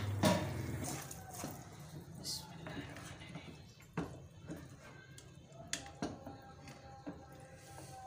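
A few light knocks and clinks of a spoon against a steel cooking pot as a hot milk mixture is stirred, spaced irregularly, with faint voices in the background.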